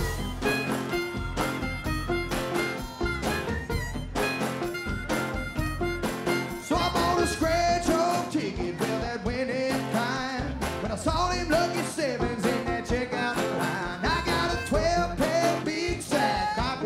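Live country-rock band playing a song with a steady drum beat, acoustic guitar and other instruments.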